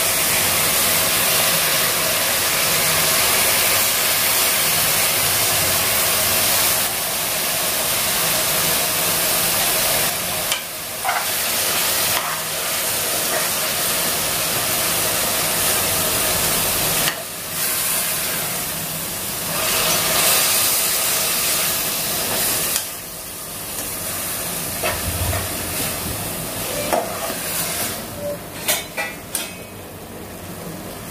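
Chopped tomatoes and onions sizzling in hot oil in a pressure cooker pan, a steady loud hiss that drops out briefly a few times. In the last few seconds the hiss thins and a slotted metal spoon clicks and scrapes against the pan as the mixture is stirred.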